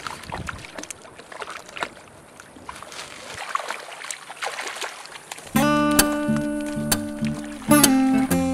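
Irregular splashing and sloshing of shallow seawater as a dog wades and drags a waterlogged plastic bag. About five and a half seconds in, louder strummed acoustic guitar music starts abruptly.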